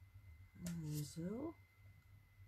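A woman's brief wordless hum, like "mm-hmm", about half a second in: one held note, then a second note gliding upward.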